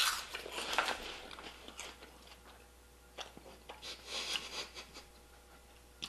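Close-up crunching and chewing of a dry puffed snack, busiest in the first second, with a few fainter crunches later.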